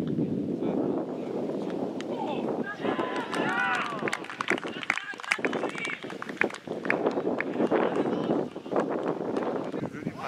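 Footballers and onlookers shouting and calling out across an open pitch, with a burst of raised, high pitched shouts about three seconds in and several sharp knocks scattered through.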